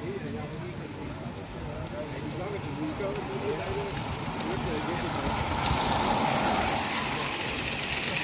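A gauge 1 live-steam model locomotive approaching and passing close by. Its steam hiss and running noise grow louder from about halfway through, over people talking in the background.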